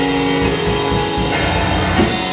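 A live church band plays held keyboard chords over a drum kit, and the chord changes about a second and a half in.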